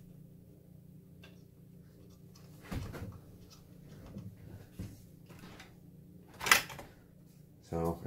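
A graphics card being worked loose from its motherboard slot without the release lever: a dull knock about three seconds in, then a sharp clack near the end as the card comes free.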